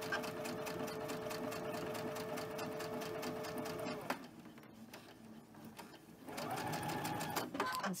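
Domestic electric sewing machine stitching a seam through quilting cotton: a steady motor hum with rapid, even needle strokes that stops abruptly about four seconds in. After a short pause, the machine runs again briefly with a higher-pitched whir near the end.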